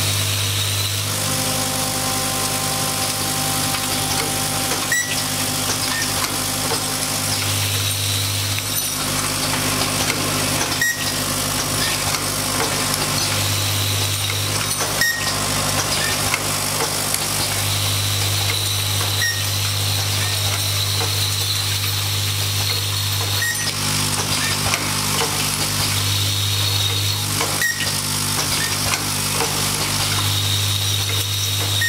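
Automatic pin-button making machine running: a steady mechanical hum, with a low drone that cuts in and out every few seconds and a sharp click roughly every four seconds as it cycles.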